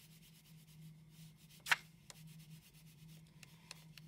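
Wax crayon rubbed back and forth on paper in quick repeated strokes, colouring in a background area. One sharp tap about one and a half seconds in.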